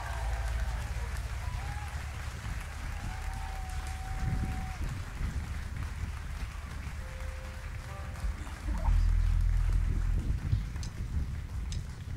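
Concert audience applauding, with a few brief calls or cheers rising over the clapping. A deep low rumble swells about nine seconds in, and a few sharp clicks sound near the end.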